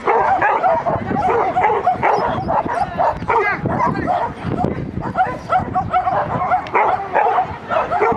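A dog barking over and over, several short barks a second, without a break.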